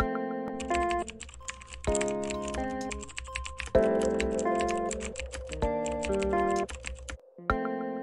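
Fast computer keyboard typing, a dense run of key clicks that starts about half a second in and stops about a second before the end. It plays over background music of sustained chords.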